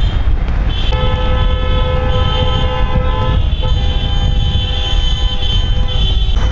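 Car horns honking: two long held blasts, the first starting about a second in and the second following after a short break, over a steady low rumble of engines and tyres on the road.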